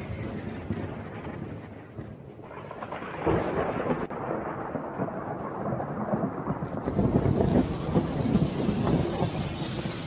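Recorded thunderstorm: rolling thunder over rain, swelling louder about three seconds in and again around seven seconds.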